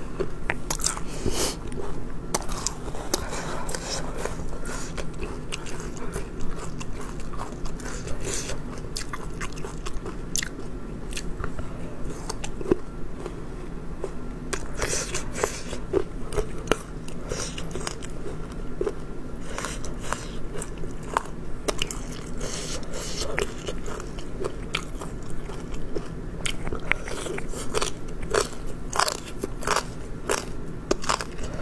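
Close-up chewing and biting of chewy, spicy beef-skin strips, with many sharp, irregular crunchy clicks throughout.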